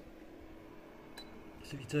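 Beldray cube fan heater running with a faint, steady hum, with a single sharp click about a second in; a man starts speaking near the end.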